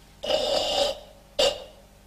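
A karateka's forceful, throat-tensed breathing as he crosses his arms and draws his fists down into a ready stance: Kyokushin ibuki breathing. It is a rasping exhale of under a second, followed by one short, sharp burst of breath.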